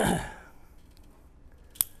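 A man's short breathy exhale, fading within half a second, then quiet room tone broken by a single sharp click near the end.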